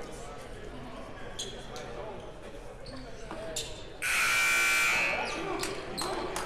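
Basketball bounces on a hardwood gym floor, then about four seconds in a scoreboard horn sounds once for about a second, the loudest sound, ringing through the large gym.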